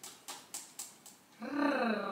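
A woman laughing: a few short breathy puffs, then a drawn-out voiced laugh that starts near the end.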